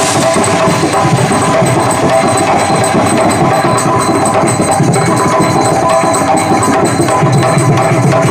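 Live accompaniment of hand drums, including a tabla set, played in a fast, continuous rhythm.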